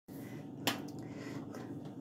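A single sharp click about two-thirds of a second in, over a faint steady low hum of room tone.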